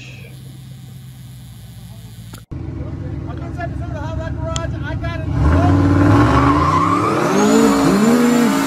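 A V8 idling low, cut off abruptly about two and a half seconds in. Then a drag-car V8 idles and revs up hard about five seconds in into a burnout, the rear tyres spinning and squealing.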